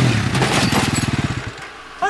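Sport quad's engine coming off the throttle. The revs fall, then it drops to a slow, even putt-putt that fades away.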